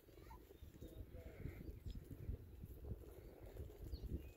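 Faint outdoor ambience, mostly an irregular low rumble of wind on the microphone.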